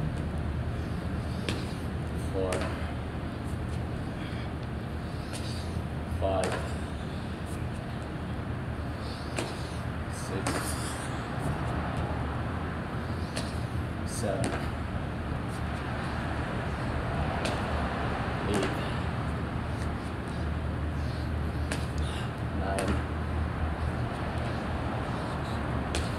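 Burpees on a concrete floor: hands and feet slap and thud down repeatedly while a man's voice sounds briefly about every four seconds, in step with the reps. A steady low hum runs underneath.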